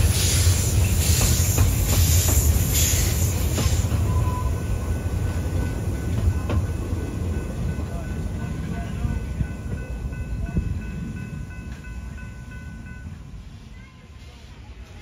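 A 1907 Baldwin 3 ft narrow-gauge steam locomotive working, its exhaust chuffing a little under two times a second over the rumble of the train for the first four seconds. The chuffs then die away and the rumble fades steadily, with a faint high steady ringing tone from about five seconds in.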